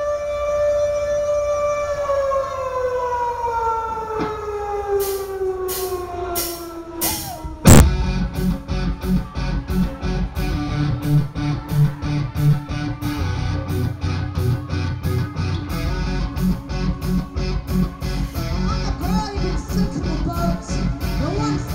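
Live metal band opening a song: a held droning tone slides slowly downward in pitch, then about eight seconds in the full band crashes in on one loud hit and plays on with heavy guitars over a steady drum beat of about two strokes a second.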